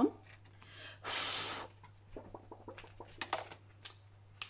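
A short breathy exhale about a second in, then light rustles and small clicks as paper banknotes are moved in the clear plastic pockets of a ring binder.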